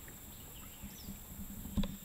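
Faint steady background hiss with a thin high whine, and one short low knock near the end.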